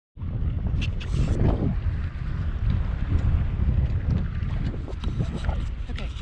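Wind buffeting the microphone on a kayak on open water: a loud, gusty low rumble that rises and falls throughout, with a few faint light ticks over it.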